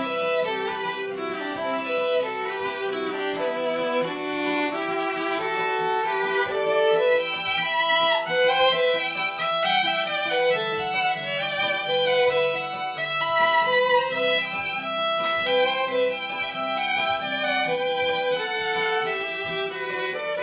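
Violin playing a bowed instrumental melody over plucked kora accompaniment in an acoustic folk piece.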